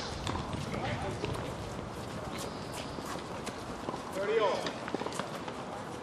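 Players' footsteps and light taps on an outdoor hard tennis court, short and scattered, with a brief voice calling out about four seconds in.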